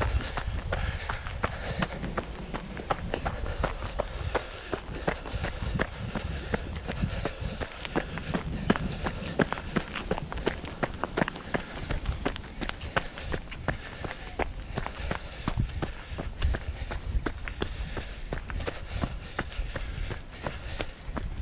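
Running footsteps on a leaf-strewn dirt trail, a quick even beat of crunching footfalls throughout, over a low rumble.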